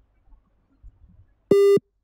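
Near silence, then about one and a half seconds in a single loud electronic beep: one steady, buzzy tone about a third of a second long that starts and stops abruptly.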